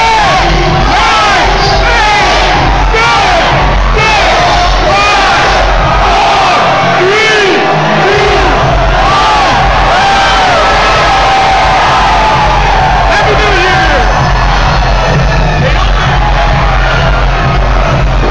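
A crowd shouting and cheering over loud music with a heavy bass beat; the beat drops out briefly about seven seconds in.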